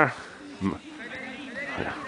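A pause in a man's talk: faint distant voices over a low outdoor background, with one short voice sound about two-thirds of a second in.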